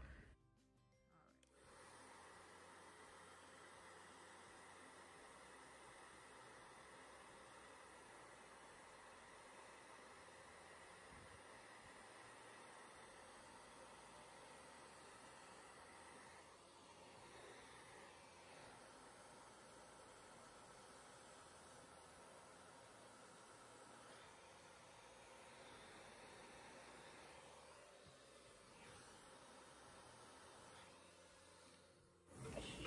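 Near silence, with only a faint, steady hiss.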